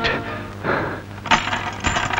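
Film soundtrack: a music swell dies away at the start, then a run of sharp, irregular clicks and clinks begins in the second half.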